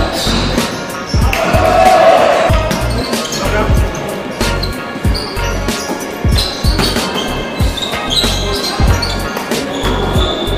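A basketball bouncing on a wooden gym floor, with irregular low thuds from dribbling and play, under background music.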